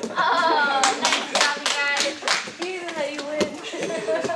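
A short run of hand claps lasting about two and a half seconds, mixed with children's voices.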